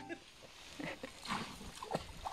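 Background music cuts off at the start; then a man's feet wading into shallow, ice-strewn lake water, with quiet irregular splashes and a few louder ones.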